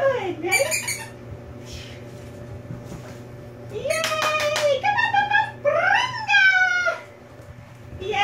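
Dog whining in several high, drawn-out calls: a falling one at the start, a long wavering one about four seconds in, and one that rises and then falls near six seconds in.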